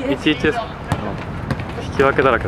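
A futsal ball being kicked on an artificial-turf pitch, with a couple of sharp knocks in the second half, and players' voices in the first half second.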